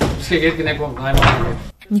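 Indistinct voices in a small room with handling noise, and a louder knock and rustle about a second in as boxes of food are set down on the floor.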